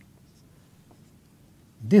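Faint scratching of a marker pen drawing a line on a whiteboard, over quiet room tone; a man's voice starts speaking near the end.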